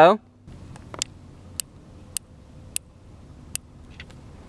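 Rifle scope windage turret being turned with a coin, giving five sharp, separate clicks about half a second apart. Each click is one detent step of sight adjustment, moving the aim to the left.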